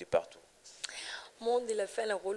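Only speech: a brief whispered stretch about a second in, then a voice starts talking.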